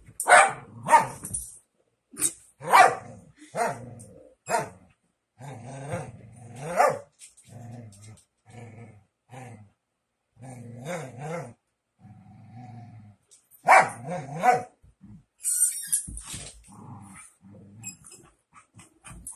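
Miniature schnauzer barking in short clusters of sharp barks, with lower, drawn-out growling grumbles whose pitch bends up and down in between.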